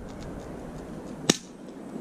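Spring-action airsoft replica Glock 17 pistol firing a single shot: one sharp snap about a second and a half in.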